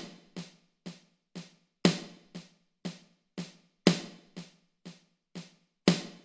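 Snare sound of an Alesis electronic drum kit, struck with sticks in a slow, even accented paradiddle: about two strokes a second, with the first of every four strokes louder.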